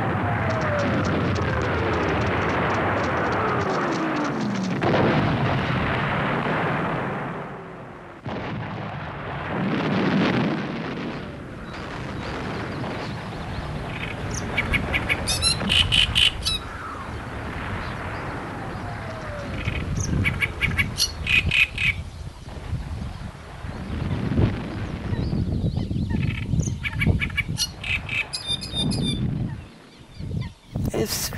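Several long descending whistles over low rumbling booms, like falling bombs. From about halfway, a great reed warbler sings its loud, harsh, repeated chattering song in phrases, with the rumbling and an occasional falling whistle going on beneath.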